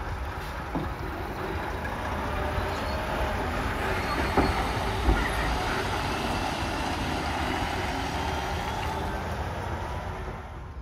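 UD Trucks heavy box truck pulling away and driving past: a steady diesel engine and tyre rumble that builds as it passes and then eases off. Two sharp knocks come about four and five seconds in.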